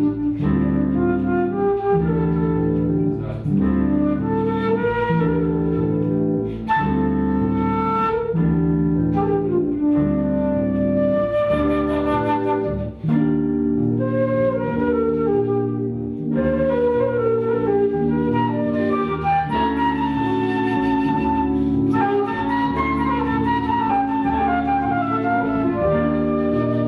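Flute playing a jazz melody line over sustained chords from a backing instrument that change every second or two.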